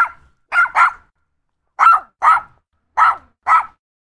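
A dog barking: seven short, sharp barks, mostly in quick pairs about a second apart.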